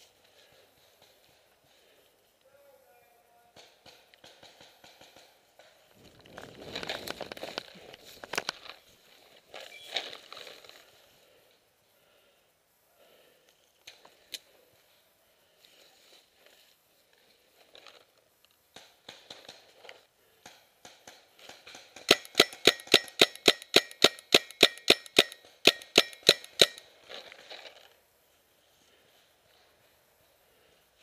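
Paintball marker firing close by: a rapid string of about two dozen sharp shots over roughly five seconds, a little after the middle. Before it, several seconds of rustling and scuffing movement.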